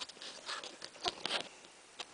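Lego plastic pieces clicking and rustling as a small speeder model is handled in the fingers close to the microphone, with a few short, light clicks.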